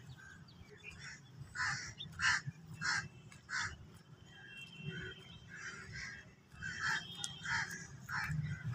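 Crows cawing: a run of five harsh caws in the first half, then a few more near the end.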